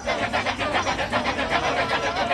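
Kecak chorus of many men chanting the interlocking "cak" syllables in a fast, steady pulse of about ten a second, with a held sung note running beneath.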